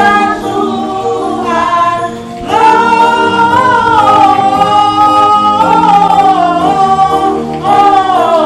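Singing of a Christian song, with several layered voices holding long notes. The singing dips briefly about two seconds in, then comes back louder with a long sustained note.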